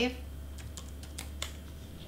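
Computer keyboard keys tapped a handful of times, short separate clicks as a number is typed in.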